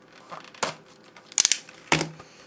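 Mouse packaging crackling and clicking as it is handled and pried at: a sharp crackle about half a second in, then a quick cluster of crackles and one more near the end.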